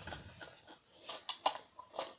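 Scattered light clicks of hard plastic being handled, about six in two seconds: a clear plastic clip and a crocodile-head grabber toy.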